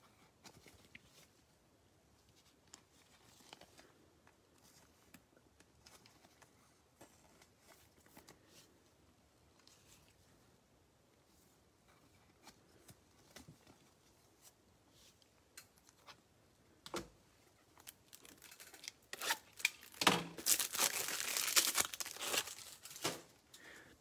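Soft scrapes and small clicks of plastic as a sleeved trading card is slid into a rigid plastic top-loader. Near the end comes a louder few seconds of plastic crinkling and tearing.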